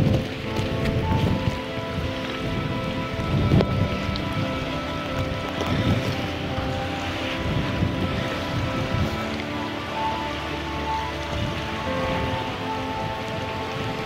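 Brass military band music playing slow, sustained chords. Gusts of wind buffet the microphone underneath, loudest near the start and again about three and a half seconds in.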